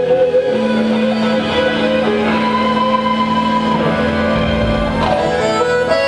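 Live forró band playing an instrumental passage, loud and unbroken, with long held notes over the band.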